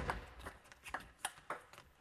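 Table tennis rally: the plastic ball clicking off the paddles and the table in quick alternation. A sharp crack opens it, then lighter clicks follow about every third of a second.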